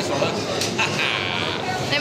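Voices and background chatter in a busy restaurant dining room.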